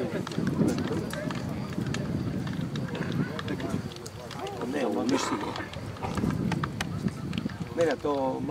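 Indistinct chatter of several voices mixed together, with no clear words, over a steady outdoor murmur.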